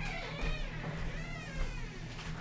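A dog whining, in a high pitch that wavers up and down, over a steady low hum.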